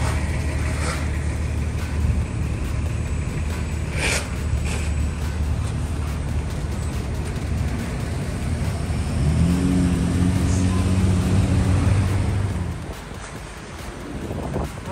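Street traffic on a wet road: a steady low rumble of car engines and tyres, with a few short clicks. For the last few seconds a deeper, steady-pitched engine drone comes in, then cuts off suddenly.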